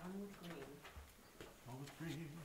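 Faint, low murmured voice off-microphone: two short hummed sounds, one at the start and one near the end. Light rustling and tapping of large paper map boards being handled comes in between.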